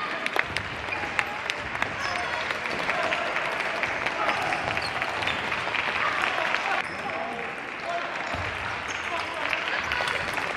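Busy table tennis hall: scattered sharp clicks of celluloid-type ping-pong balls striking tables and paddles across several tables, over a steady hubbub of voices.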